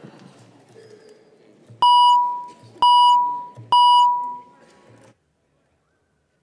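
Three electronic beeps about a second apart, each a single clear tone that starts sharply and fades within half a second. They come from the chamber's roll-call system and signal that the roll is being taken.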